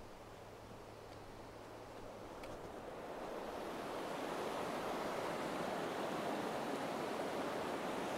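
Rushing water of the Chattooga River's shallow rapids, a steady noise that grows louder over the first few seconds as the microphone turns toward the water, then holds.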